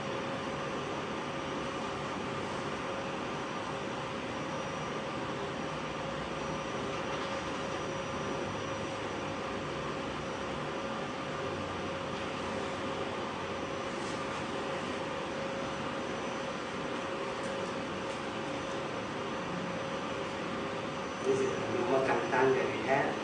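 Steady room noise: an even hiss with a faint constant hum, unchanging throughout.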